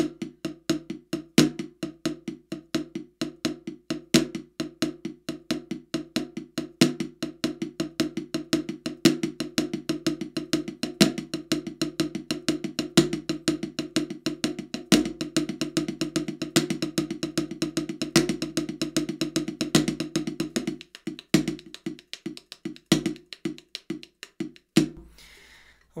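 Drumsticks playing a fast triplet shuffle hand pattern on a practice pad on a snare drum: a steady run of strokes with soft ghost notes between them and regular louder backbeat accents struck with both sticks together. The playing thins out and stops about a second before the end.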